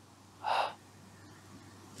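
A man's short, breathy gasp about half a second in.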